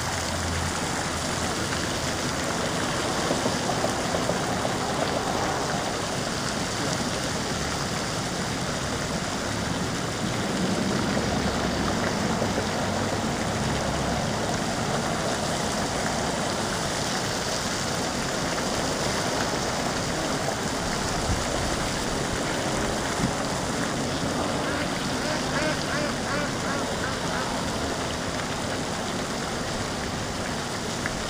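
Steady splashing hiss of water from a pond's spray fountain.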